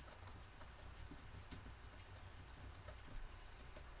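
Near silence: faint, irregular light clicks over a low steady room hum.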